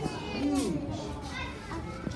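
Children's voices: several kids talking and calling out, high-pitched and lively.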